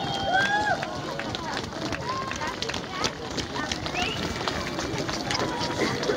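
Several people talking and calling out in the open, with many short, sharp cracks scattered throughout.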